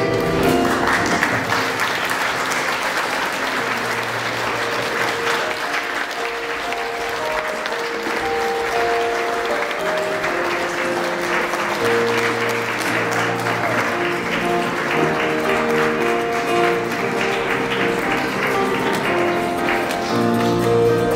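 Audience clapping over instrumental music. The applause starts about a second in and dies away near the end, while the music's held notes carry on.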